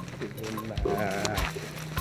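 Background film music with a steady low beat, and over it a quavering, bleat-like vocal sound in the middle.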